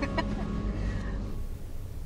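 A few short bird calls right at the start, then a brief higher call about a second in, over a steady low rumble.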